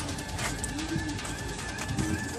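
Pigeons cooing, with one low rising-and-falling coo about half a second in. A faint steady high ring runs through the second half.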